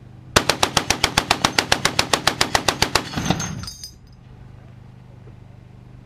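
M2HB .50-calibre heavy machine gun firing one continuous burst of about twenty shots at roughly eight a second, emptying a 20-round belt in under three seconds, followed by a short rolling echo.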